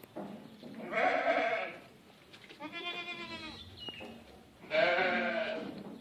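A goat bleating three times, each call about a second long, the first and last the loudest.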